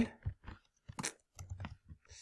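A handful of irregular computer keyboard keystrokes, short clicks spaced unevenly over two seconds.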